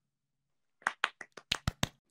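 Hand clapping: a quick run of about eight sharp, uneven claps starting about a second in and lasting about a second.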